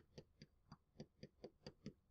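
Faint, unevenly spaced clicks, about four or five a second: a pen tapping and striking the surface of an interactive whiteboard while a formula is handwritten.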